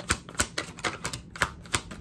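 Tarot cards being shuffled by hand: a quick, uneven run of sharp card clicks, about five a second.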